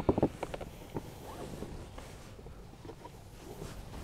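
Car seat belt webbing being pushed and pulled through the plastic belt guide of a child car seat: fabric strap rustling over plastic, with a few light knocks in the first second.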